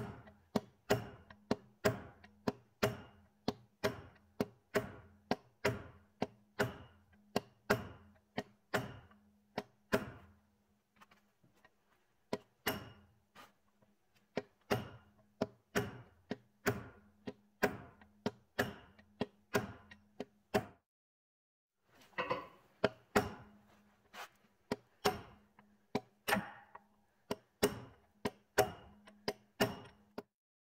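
Steady series of metal-on-metal hammer blows on a brass punch, driving a 1936 Caterpillar RD-4 transmission shaft rearward through its bearing, about two to three blows a second. The blows pause briefly about two-thirds of the way through, then resume.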